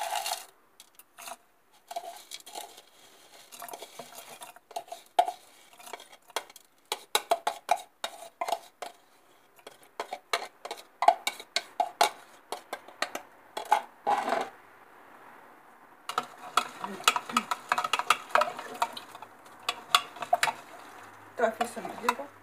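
A metal teaspoon clinking and scraping against a glass jar, stirring sodium hydroxide (lye) into cold water to dissolve it. Irregular quick clinks, each with a short glassy ring, with a brief lull about two-thirds of the way through.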